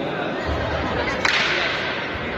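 One sharp snap a little past halfway, followed by a brief hiss, over a steady background murmur.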